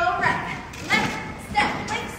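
A voice in a large, echoing hall calling out short cues in an even rhythm, about three calls in two seconds. Dull thuds from dancers' feet landing on the wooden floor run underneath.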